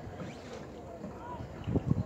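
Lakeside outdoor ambience: a low, uneven rumble of wind on the microphone with faint distant voices, and a couple of low knocks near the end.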